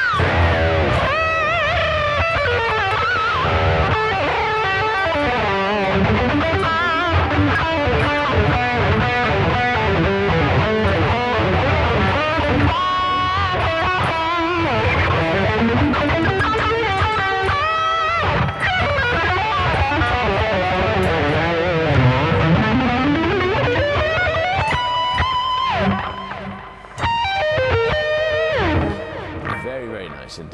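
Ibanez RG5170B electric guitar with Fluence pickups, played with a distorted tone through a Laney amplifier: fast lead lines with wavering bent notes and pitch slides, easing into a few held notes near the end.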